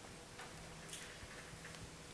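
Quiet hall room tone picked up by a stage microphone, with a couple of faint ticks about half a second and a second in.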